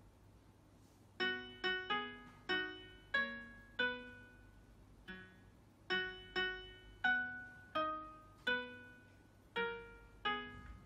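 Okearin F1 flowerpot Bluetooth speaker playing single piano notes through its speaker, one for each touch of the plant's leaves. About a dozen notes of varying pitch sound one at a time at uneven intervals, each struck sharply and fading, with a pause at the start and another about halfway.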